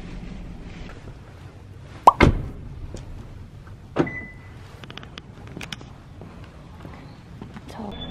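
A car door shuts with a heavy thump, then about two seconds later a click and a short beep as the car is locked at its door handle.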